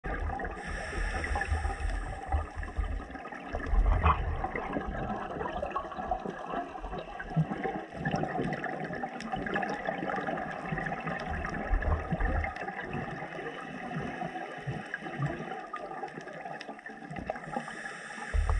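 Underwater sound picked up through a camera's waterproof housing: a continuous water rush with gurgling bubbles, strongest as a low rumbling burst of bubbles about four seconds in. The pattern fits a scuba diver's regulator and exhaled bubbles.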